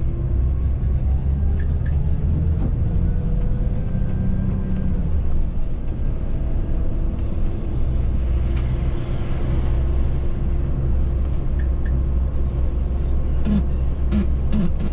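Volvo B9R coach's diesel engine and road noise heard from the driver's seat at cruising speed: a steady low rumble with a faint engine tone that drifts slightly in pitch. A couple of sharp clicks come near the end.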